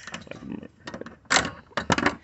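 Metal clicks and rattles of a car hood latch assembly being handled and worked, a string of sharp clicks with two louder knocks in the second half.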